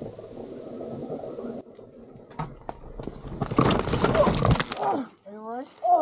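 Honda XRE300 motorcycle going down on a rocky dirt track, sliding out on slippery stones: a loud burst of scraping and clattering of the bike on rocks a few seconds in. The rider cries out near the end.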